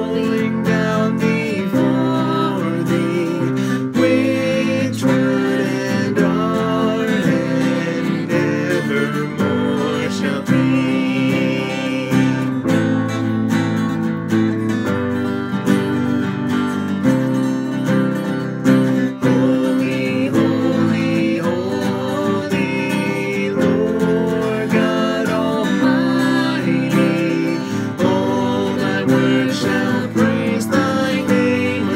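Acoustic guitar strummed through a worship song, with a woman and a man singing along near the start and again near the end.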